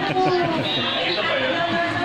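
Several people talking over one another: general party chatter.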